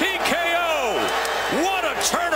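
A man's voice calling out in drawn-out, rising-and-falling shouts, the excited commentary of a knockdown.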